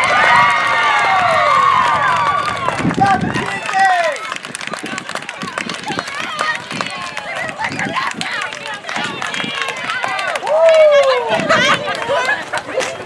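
High-pitched cheering and shrieks from a group of teenage girls, loudest in the first three seconds, then excited chatter and scattered shouts, with a last loud yell near the end: a softball team celebrating a teammate's run at home plate.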